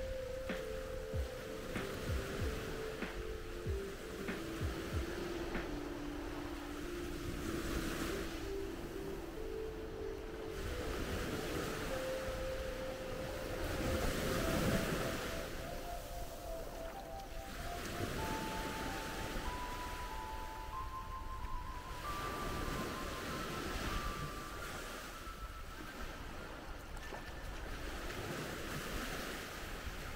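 Small waves washing onto a sandy beach, swelling and fading every few seconds, with the loudest swell about halfway through. A slow melody of single held notes runs over them, stepping down in pitch and then climbing back up.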